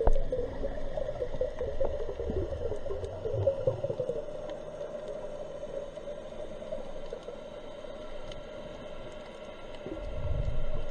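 Underwater sound picked up through a camera housing on a dive: a steady muffled hum with low rumbling in the first few seconds, and faint scattered clicks.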